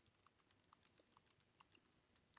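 Very faint computer keyboard key presses: a quick, irregular run of soft clicks from repeated paste keystrokes.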